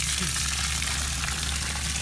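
A steady stream of water gushing out of a boat hull's open drain plug hole as the water trapped inside the hull drains out.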